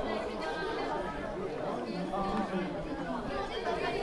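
Background chatter of several people talking at once, at a moderate level, with no single voice standing out: spectators and people along the sideline.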